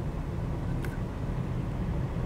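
Steady low rumble of a Mercedes-Benz car heard from inside its cabin as it creeps forward in slow traffic, with a single faint click about a second in.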